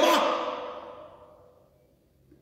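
A man's preaching voice finishes a loud word, and its echo hangs on in the large church, fading away over about a second and a half into near silence.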